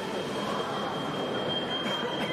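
Steady background noise of a large fencing hall, with a thin, steady high-pitched tone coming in about half a second in and holding on.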